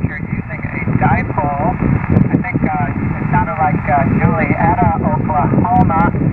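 A weak voice from a distant amateur radio station in single-sideband, heard through the transceiver's speaker: muffled, cut off above the speech range and mixed with steady band static and hiss, so the words are hard to make out.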